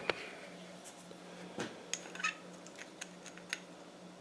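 A few faint, scattered clicks and taps of stiff wire being bent by hand around a small ceramic crucible, over a low steady hum.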